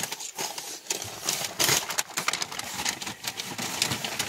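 Rustling and many irregular sharp clicks of movement and handling inside a car cabin as a person climbs into the seat beside the camera.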